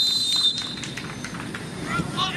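Referee's whistle blown in one long, steady blast to start the match, cutting off about half a second in, followed by a few faint knocks.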